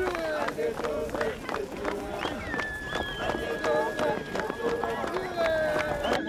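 A running crowd shouting and singing together, with many footfalls and knocks. One high voice holds a long steady note through the second half.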